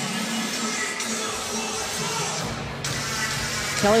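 Music playing over an arena's sound system, under the steady noise of a basketball crowd during a timeout.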